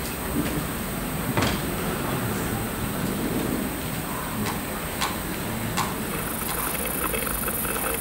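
Laptop keys being tapped: a handful of sharp, single clicks spread a second or more apart over the steady hiss of a room.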